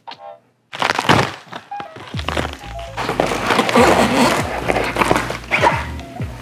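Plastic packaging crinkling and rustling in bursts of crackle as the foot pad is handled and pulled from its wrapping, over background music.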